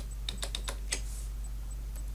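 Computer keyboard keys clicking: a quick run of about half a dozen key presses within the first second, including the Ctrl key, over a steady low hum.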